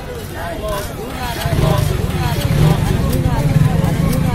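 Several people talking over one another, and from about a second and a half in, a motor vehicle engine comes in and runs steadily underneath the voices.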